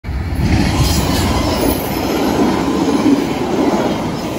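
A VIA Rail passenger train's cars rolling past on the rails, with a loud, steady rumble and rush of wheels on track.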